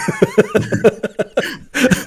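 Laughter: a run of short, quick chuckling pulses, several a second.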